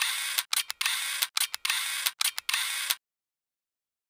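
Logo-animation sound effect: a run of about seven short, choppy bursts of hiss, each cut off sharply, stopping abruptly about three seconds in.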